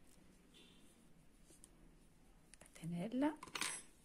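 A few seconds of quiet room tone with faint handling clicks from the crochet hook and yarn. About three seconds in, a woman's voice starts speaking Italian.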